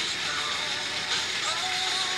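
Motorized Percy toy train engine, its small electric motor whirring steadily as it pulls trucks along plastic track, with a song with singing playing in the background.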